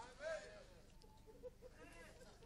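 Near silence, with faint distant voices murmuring briefly, once just after the start and again near the end.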